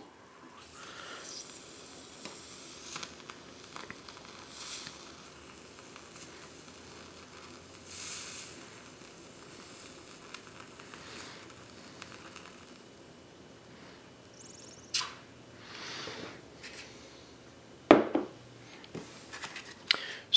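A burning UCO stormproof match fizzing faintly as it stays lit under water in a glass, then burning on in the air once it is pulled out. A couple of sharp knocks come near the end.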